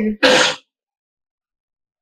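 A woman's voice ends a spoken question, followed by a short breathy burst of noise, then dead silence from just over half a second in.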